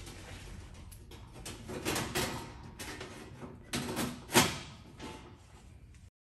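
Sheet-metal door panel rattling and knocking as it is lifted and seated into its notches. Several knocks, the loudest a little over four seconds in.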